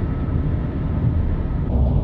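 Steady road and engine rumble inside a moving car's cabin at cruising speed.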